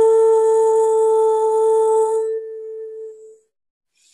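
A woman's voice holding one long, steady hummed note of a chant. It thins about two seconds in and fades out by about three and a half seconds.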